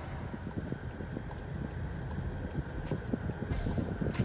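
Car driving in city traffic, heard from inside the cabin: a steady low road and engine rumble, with a couple of faint clicks near the end.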